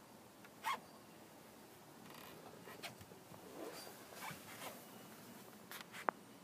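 Faint rustling and handling noise from a phone being carried through a minivan's cabin, with a short knock under a second in and a few small scrapes and clicks after.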